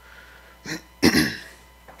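A man clearing his throat once, about a second in, with a shorter sound just before it.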